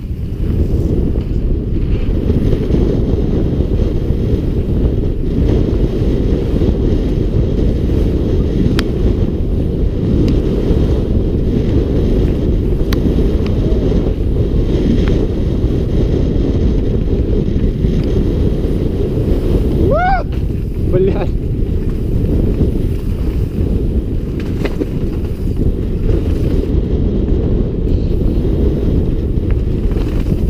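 Wind buffeting a helmet-mounted camera's microphone at speed on a mountain-bike descent: a loud, steady low rumble with tyre and trail noise underneath. About two-thirds of the way through, two short pitched sounds with a rising-falling pitch cut through.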